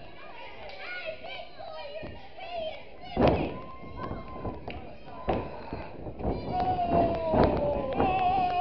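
Thuds of wrestlers' feet and bodies on a wrestling ring. The loudest thud comes about three seconds in, and a few more follow later. Voices from the small ringside crowd call out throughout, with one long shout near the end.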